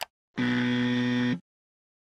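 A brief click, then a steady, low-pitched buzzer tone held for about a second and cut off sharply: an electronic buzzer sound effect of the kind that signals a wrong answer.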